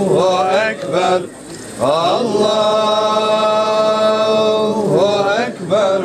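A man's solo voice chanting in the melismatic style of Qur'anic recitation. Ornamented runs give way to one long held note, with short pauses for breath about a second in and near the end.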